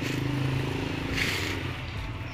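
A motor vehicle's engine running steadily nearby, with a low hum that fades near the end.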